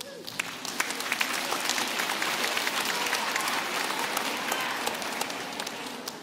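Audience applause: dense clapping that starts at once, swells, then slowly fades toward the end.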